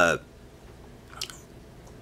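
A man's drawn-out 'uh' trailing off, then a pause in his speech with room tone and one faint short mouth click about a second in.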